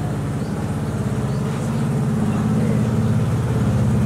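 A low engine running steadily at idle with a fast, even throb, growing a little louder about halfway through.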